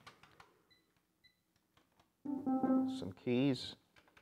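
Korg Triton synthesizer tried out note by note. A few faint button or key clicks come first. A held note sounds a little over two seconds in, then a shorter note with a wavering vibrato.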